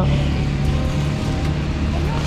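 A vehicle engine running steadily with a low hum, mixed with rustling of a nylon and plastic rain cover being handled close by.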